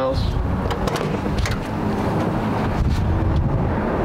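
Car door unlatched and swung open, with a sharp click about one and a half seconds in, over a steady low rumble.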